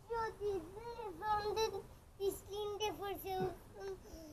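A young child singing in short, high-pitched phrases, with held notes that slide up and down and brief pauses between them.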